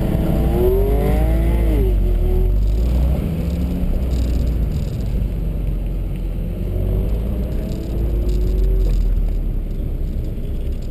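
2016 Ford Focus RS's turbocharged 2.3-litre four-cylinder accelerating hard from a standing start, its note rising and then dropping sharply at an upshift about two seconds in, with a second rise near the end. A steady low rumble of wind on the outside-mounted microphone runs under it.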